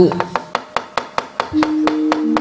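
Rapid, even wooden knocks, about seven a second: a wayang kulit dalang beating the cempala on the wooden puppet chest to cue the gamelan. About one and a half seconds in, steady held notes from the gamelan come in under the knocking.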